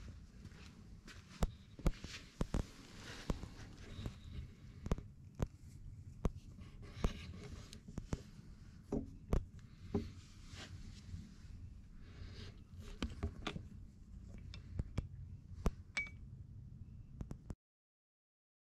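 Irregular light clicks and knocks of metal parts being handled, a brake caliper and a brake hose fitting, over a low steady hum. The sound cuts off suddenly near the end.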